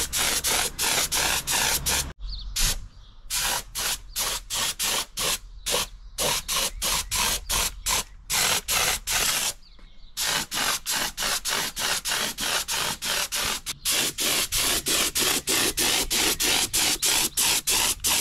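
Gravity-feed air spray gun spraying paint in short hissing bursts, about three a second, with brief pauses about two seconds in and again about ten seconds in.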